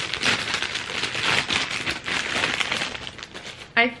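Clear plastic packaging bag crinkling as a plastic toothed headband is pulled out of it, a dense run of crackles that stops near the end.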